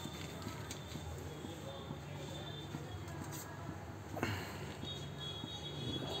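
Water in a steel pot heating on a low flame just before the boil: a low steady hiss with rapid faint ticking and crackling as small bubbles form on the pot's bottom, and a brief louder sound about four seconds in.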